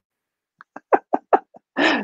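A man laughing: a quick run of about six short bursts, roughly five a second, then a longer laugh near the end.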